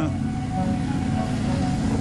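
Engine of the vehicle towing the sled over snow, running at a steady speed with an even droning hum.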